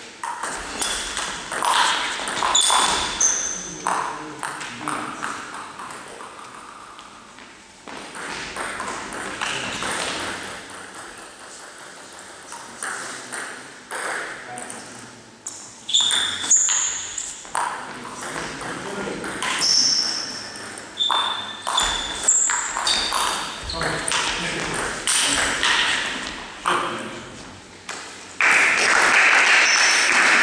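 Table tennis rallies: a celluloid ball clicking in quick runs of hits off bats and table, with short high squeaks mixed in and pauses between points. A burst of clapping comes near the end.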